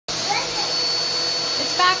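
Vacuum cleaner running steadily: an even rushing hiss with a constant high-pitched whine.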